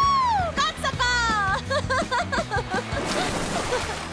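A cartoon character's voice letting out a long excited shout that swoops up and down in pitch, a second swooping exclamation about a second in, then a quick run of short vocal bursts, over background music.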